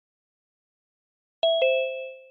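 Two-note electronic notification chime from a video-call app: a higher ding and then a lower one a fifth of a second later, both ringing out and fading.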